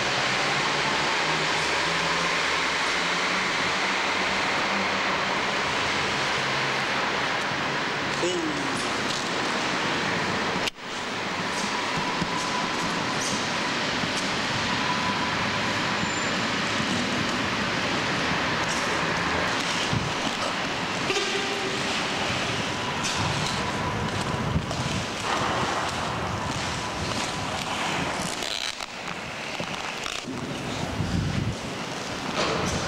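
Inline skate wheels rolling on a concrete car-park floor: a steady rolling rush, broken by a sudden brief dropout about eleven seconds in.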